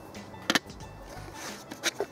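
Two sharp clicks of small metal food tins being handled and set down on an aluminium tray, the second about a second and a half after the first.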